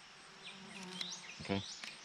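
A flying insect buzzing faintly with a low, steady hum.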